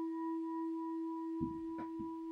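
Singing bowl ringing on after a single strike: a steady low tone with fainter higher overtones, sounding the start of the meditation. Soft low rustling and small thuds begin about halfway through.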